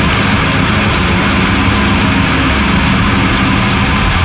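Heavy, distorted drone from improvised rock music recorded on four-track tape: a thick, loud wash of fuzz over held low notes that shift a few times.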